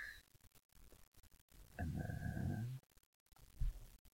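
A short, low, voice-like growl or grunt lasting about a second, near the middle.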